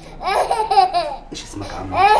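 A small child's high-pitched voice in short, repeated bursts that rise and fall in pitch, as the child is handled during a doctor's examination.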